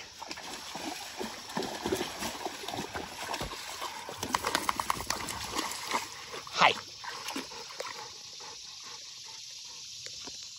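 Splashing footsteps of a dog wading through a shallow creek, an irregular patter of steps in the water, with one brief high sound falling in pitch about two-thirds of the way in. Near the end the splashing eases to a quieter steady trickle of water.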